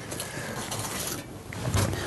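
Rustling and crinkling of oven insulation wadding and aluminium foil as an oven thermostat's capillary tube is pulled out through it, busiest in the first second.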